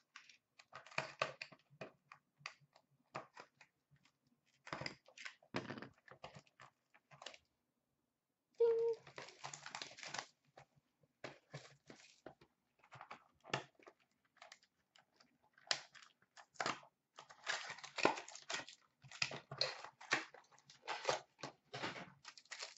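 A box of hockey cards and its packs being opened by hand: intermittent crinkling and tearing of wrappers and cardboard, with light clicks of cards being handled and short pauses between bursts.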